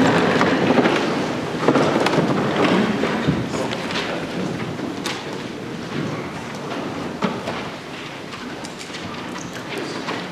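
A congregation sitting back down in wooden pews: a haze of rustling and shuffling with scattered knocks and creaks, dying away over the seconds.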